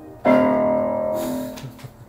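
A piano chord struck once, its several notes ringing together and fading away over about a second and a half.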